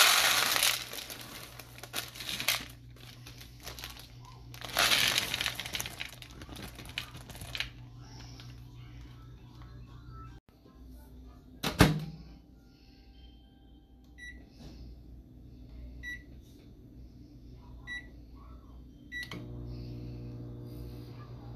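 Chocolate chips and then butterscotch chips poured from their bags into a plastic bowl, two spells of dense rattling. Then a sharp knock, a few short beeps from a Hamilton Beach microwave's keypad, and the microwave starting up with a steady humming buzz near the end.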